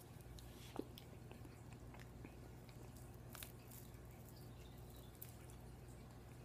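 Near silence with faint mouth sounds of someone eating an ice pop: a brief click a little under a second in and another faint one in the middle.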